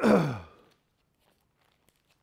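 A man's short sigh, falling in pitch over about half a second at the very start.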